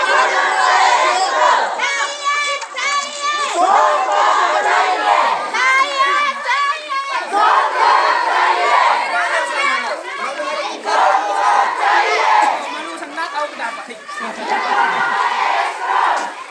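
A marching crowd of protesters, many of them women, shouting slogans together in loud, repeated bursts of many voices.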